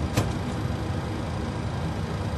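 Steady cockpit background noise of a Boeing 737-800 parked on the ground: an even rush of air conditioning and ventilation.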